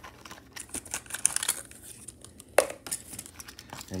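Clear plastic wrapping crinkling and crackling as it is handled and pulled off a diecast model car, in irregular small clicks with one sharper crackle about two and a half seconds in.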